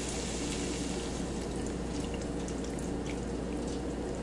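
Half-and-half poured in a steady stream into a hot skillet of buttery sautéed vegetables, a continuous pouring sound with faint crackling from the pan.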